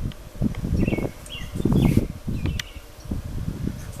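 Wind buffeting the microphone in uneven low gusts, with a bird giving a few short chirps around the middle.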